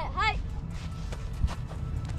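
Live outdoor sound from a football practice field: a voice calls out briefly at the start over a low steady rumble, with a few light knocks and one sharper knock about one and a half seconds in.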